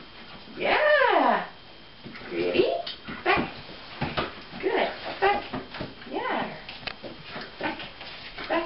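A puppy whining in a string of short, high whimpers that slide down in pitch, the loudest and longest about a second in.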